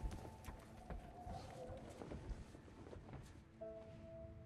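Quiet film score with faint held notes, a chord of several held notes entering near the end, over scattered small clicks and knocks.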